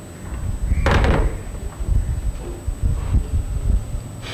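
A clunk about a second in as a desk telephone handset is put down on its cradle, followed by irregular low bumping.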